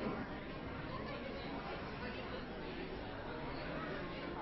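Congregation greeting one another all at once: a steady murmur of many overlapping conversations, with no one voice standing out.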